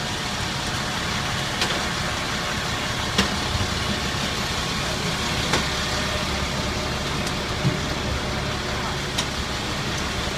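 Steady engine idling and street-traffic hum, with a few short sharp clinks several seconds apart.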